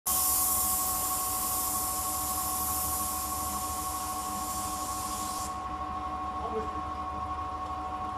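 Hose-fed spray gun hissing as it sprays white coating, cutting off suddenly about five and a half seconds in. A steady hum with a few constant tones runs underneath.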